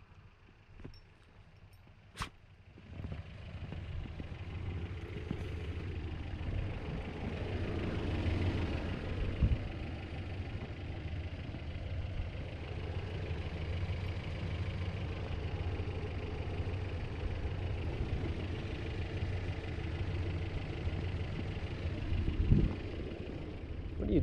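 Toyota Sunrader's 22R four-cylinder engine running steadily as the truck creeps through deep snow on chained tyres, coming in about three seconds in.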